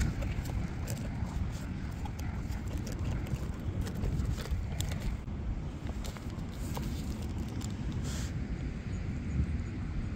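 Steady low wind rumble on the microphone, with faint scattered rustling as a plastic bag and foam packing are handled.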